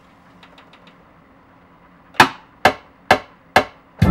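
Four sharp drum hits, evenly spaced a little under half a second apart, counting in the beat, after a couple of seconds of quiet with a few faint clicks of controller pads or buttons.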